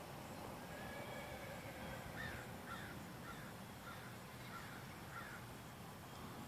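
Faint bird calls: a run of about six short, repeated calls roughly half a second apart, starting about two seconds in, over a faint steady outdoor background.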